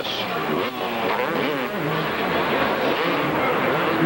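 Engines of 250cc supercross motorcycles revving as the bikes race through the track's corners, their pitch rising and falling over a steady wash of track noise.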